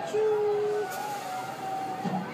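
Electric park train's drive whining in steady held tones, one of them stopping just under a second in, with a brief hiss about a second in, like a launch ride's accelerator.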